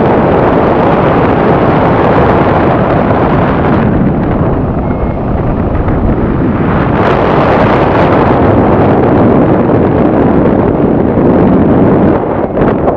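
Loud, continuous rush of wind buffeting a mobile phone's microphone in the airflow of a paraglider in flight. It eases a little about four seconds in and builds again about two seconds later.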